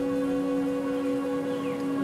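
Background music: a slow, sustained chord of steady held tones.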